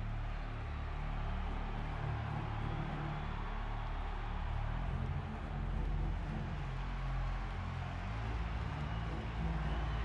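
A low, steady rumbling drone from the trailer's sound design, with deep sustained notes that shift slowly and a soft hiss above them.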